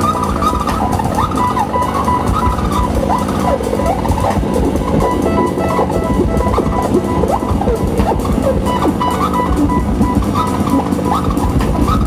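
Live electronic music from modular synthesizers: a dense, continuous mass of sound over a low rumble, with many short sliding pitches and a pulsing high tone that drops out in the middle and returns near the end.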